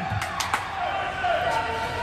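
Two sharp knocks in the first half second, then a murmur of voices around an ice hockey rink.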